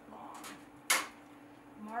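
A single sharp knock about a second in, from a steel framing square being set down on a piece of thin sheet steel on a steel workbench. A faint rustle of the metal being shifted comes just before it.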